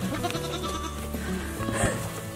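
A Nigerian Dwarf goat bleats briefly near the end, over background music with long held notes.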